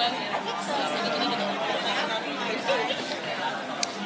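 Audience chatter: many people talking at once, their voices overlapping into an indistinct murmur. A brief click sounds just before the end.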